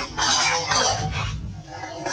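Long-tailed macaques calling in short, noisy, harsh cries that come in uneven bursts.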